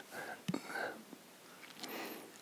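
A man's faint, breathy chuckle close to a microphone, in a couple of soft puffs, with a small click about half a second in and another soft breath near the end.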